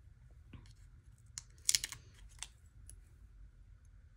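Tweezers and long fingernails handling a paper sticker sheet as a sticker is peeled off: a few scattered light clicks and taps, loudest in a quick cluster a little under two seconds in.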